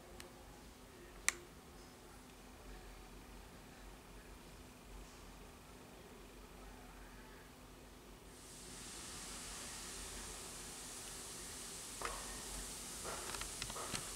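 Faint background noise with a low steady hum and a sharp click just over a second in; about eight seconds in a steady hiss comes in and continues, with a few small clicks near the end.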